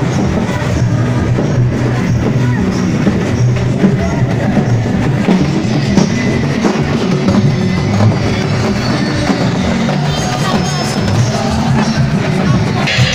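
Loud band music with drums and a heavy bass beat, playing continuously.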